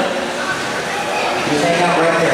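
A man's voice, the race announcer's, over a steady background din in a large indoor hall; the voice becomes clearer in the second half.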